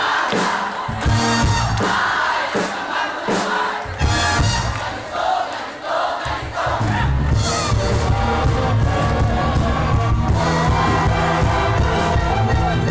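A youth brass band playing live, led by trombones, with a crowd cheering and shouting over the music. The sound grows fuller and heavier in the low end about halfway through.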